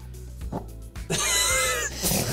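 A high-pitched, wavering cry lasting under a second near the end, like a meow or a squeaky voice, over faint background music.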